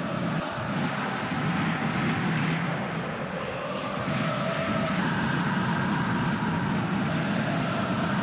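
Steady stadium crowd noise from the stands at a football match. From about four seconds in, faint held tones sit on top of it.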